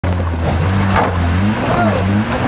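A 4x4 SUV's engine running steadily under load, with a low, steady note, as it crawls up a steep rock ledge.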